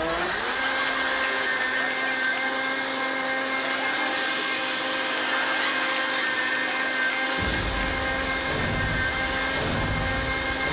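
Countertop blender motor reaching full speed at the start and then running steadily, a loud whining hum with the churning hiss of its contents. About seven seconds in, a deep low rumble joins underneath.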